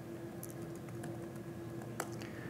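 Faint laptop keyboard typing, a scattering of light key clicks as a terminal command is entered, over a steady low hum.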